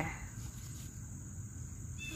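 Steady high-pitched insect song, a continuous unbroken trill, over a faint low rumble.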